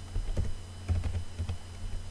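Computer keyboard typing: an uneven run of quick keystrokes as a word is typed.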